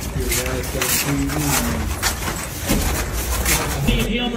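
Indistinct voices of people talking under a steady din, with scattered short knocks and clatter.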